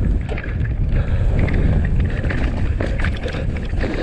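Orange mountain bike ridden fast down a muddy, rutted trail. A steady low rumble of wind buffeting the camera microphone and tyres on dirt, with scattered clicks and rattles from the bike over the bumps.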